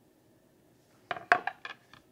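A wooden chopping board set down and kitchenware handled on a stone worktop: a quick run of knocks and clinks starting about a second in, one of them loud.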